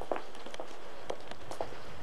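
Footsteps of a person walking, about two steps a second, over a steady background hiss.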